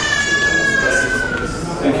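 Public-address feedback squeal: one high, steady ringing tone that slides slowly lower in pitch and stops a little past halfway.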